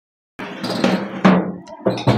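A short edited-in musical sound effect with drum hits and a quick falling swoop, starting abruptly out of dead silence. A second, shorter hit comes near the end.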